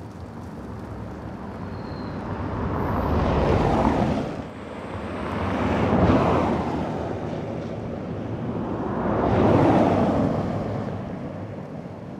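Cars driving past one after another on a snow-covered road: three swells of tyre and engine noise, each rising and then fading away.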